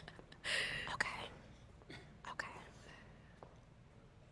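Faint breathy whispering and soft vocal sounds from a person: a short hushed breath about half a second in, then a few brief, quiet murmurs.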